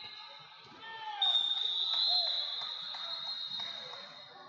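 A referee's whistle blown in one long, steady, high blast starting about a second in, stopping the action, over hall chatter and scattered thuds of bodies on the mat.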